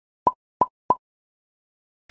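Three quick identical pop sound effects, each a short upward blip, about a third of a second apart, with dead silence around them as added in editing.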